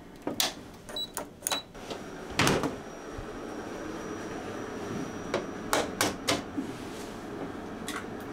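Kitchen clatter: several sharp clacks of a small frying pan and utensils being handled, with a louder clunk about two and a half seconds in. After it a steady rushing sound sets in, tap water running as the pan is filled, with a few more clacks around the sixth second.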